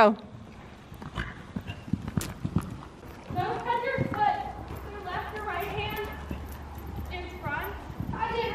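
A horse cantering on arena sand, its hoofbeats coming as a string of dull thuds, clearest in the first three seconds. Voices talk through the second half.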